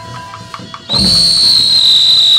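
Burmese hsaing ensemble music with light percussion ticks, then about a second in a loud, shrill, steady whistle tone cuts in and holds, sliding slightly down in pitch.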